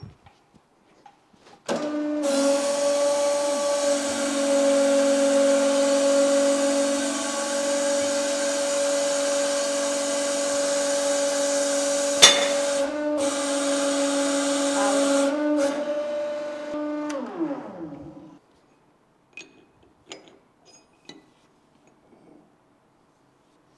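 Hydraulic press pump motor running with a steady hum and whine as the ram pushes a pin through a steel die to force out a compressed wood plug. A single sharp crack comes about twelve seconds in. The motor then winds down with a falling pitch, followed by a few light metal clicks.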